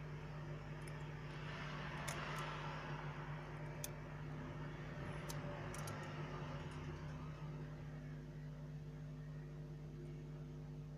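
A steady low machine hum with a hiss under it, and a few faint sharp clicks as metal tweezers handle small parts and a flex connector on a phone's circuit board.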